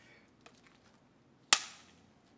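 A film clapperboard snapped shut once about a second and a half in: a single sharp clap that slates the take for sound sync.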